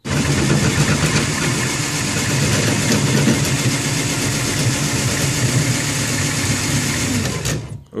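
Cordless drill's motor and gearbox, powered straight from a battery, running steadily as it turns a threaded rod that tilts the incubator's egg trays, its leads swapped so it runs in reverse. It cuts off suddenly about seven and a half seconds in, then starts up again just before the end.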